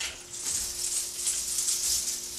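Strands of a beaded curtain rattling and clattering against each other as someone pushes through them: a dense, continuous high rattle of small beads that starts suddenly.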